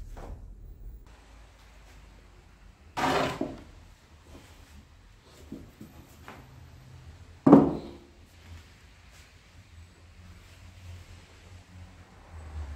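Wooden pieces being handled on a workbench: two knocks, a short scraping one about three seconds in and a louder, heavier thump a little past halfway, with faint handling clicks between.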